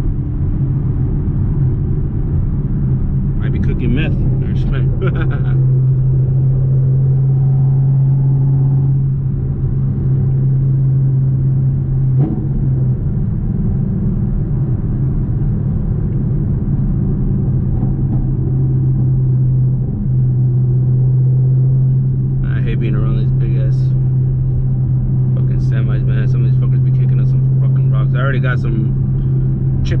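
Fifth-generation Chevrolet Camaro's engine through Speed Engineering long-tube headers, cruising at a steady speed, heard inside the cabin as a steady low exhaust drone over road noise.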